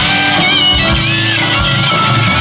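Live rock band playing an instrumental passage: an electric guitar lead with bent, wavering notes over drums and bass, with a steady beat.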